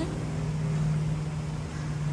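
Steady low machine hum at a constant pitch, with a faint hiss above it.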